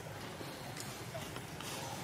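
Steady outdoor background noise with a faint, brief high chirp or squeak about a second in.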